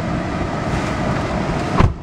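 Steady rumble and hiss inside a car's cabin, then one heavy car door shutting near the end, after which the outside noise is cut down.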